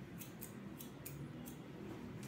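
Hair-cutting scissors snipping through wet hair, about five short, crisp snips in quick succession.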